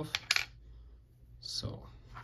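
Small brass retaining clip from a padlock cylinder coming off and landing on a wooden tray: two sharp metallic clinks a fraction of a second in, then softer handling noise near the end.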